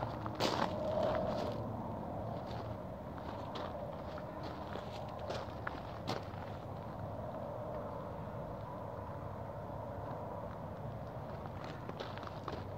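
Footsteps of a person walking along a street, heard as irregular soft clicks over a steady low background noise.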